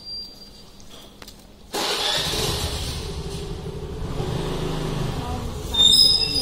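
A motor vehicle's engine rumble that starts abruptly about two seconds in and carries on steadily.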